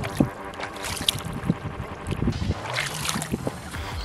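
Bare feet wading through shallow water over a pebble shore: irregular splashes and sloshing, with soft background music of held chords underneath.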